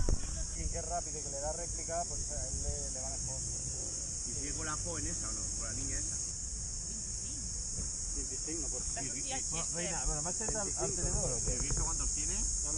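Steady high-pitched chorus of insects such as crickets or cicadas, with people's voices faint in the background.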